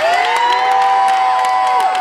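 Crowd cheering, several voices holding long shouts at once for nearly two seconds, falling away near the end.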